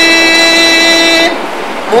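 A man's chanting voice holding one long, steady note in an Arabic devotional recitation. The note breaks off a little past halfway, and the next line starts with a rising voice at the very end.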